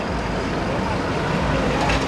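Car engine and road noise, a steady rumbling hiss with some faint voices in it.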